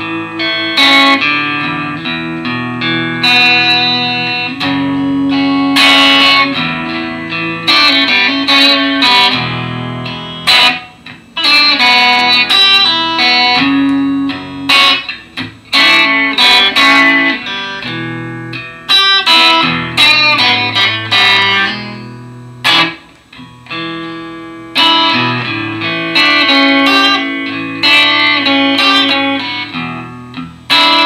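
Fender Stratocaster electric guitar played through a Fender Champion 600 small tube amp: picked single notes and chords with brief pauses between phrases.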